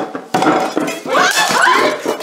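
A crash of something breaking about a third of a second in, followed by clinking and rattling of falling pieces.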